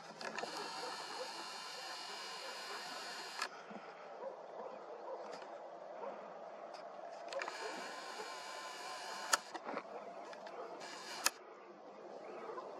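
Lens zoom motor of a superzoom camera whirring in two runs, the first about three seconds long and the second about two, as the lens zooms in. Light handling clicks are mixed in, with two sharp clicks in the second half.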